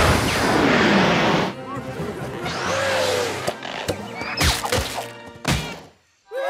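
Cartoon sound effects over music: a loud rushing noise with a falling whistle-like tone through the first second and a half, then several sharp crash and hit sounds spread over the rest, with the music dropping out at the very end.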